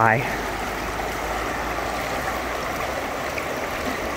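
Steady rushing of a glacial river's current, the river running high.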